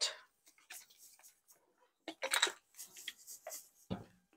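Chalk paint being stirred in a small plastic cup: faint scattered scraping and tapping, busier a little past two seconds, then one sharp knock near the end.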